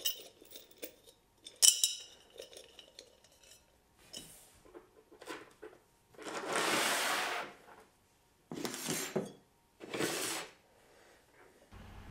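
Steel nuts and washers clinking as they are handled, with one sharp ringing metallic clink about two seconds in. Then several short scraping and rustling sounds of the hardware and the terracotta pot being handled, the longest lasting about a second.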